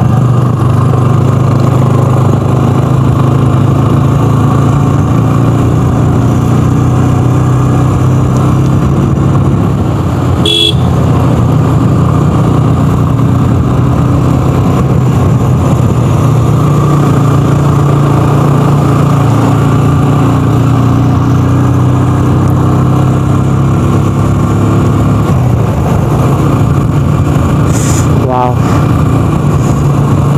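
A motorcycle engine running steadily on the move, with wind and road noise. Two brief horn toots stand out, about ten seconds in and near the end.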